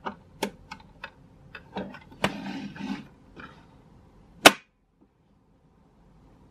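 Plastic clicks and knocks from handling a toy safe-style coin bank's hinged door, ending in one much louder sharp snap about four and a half seconds in, like the door being shut.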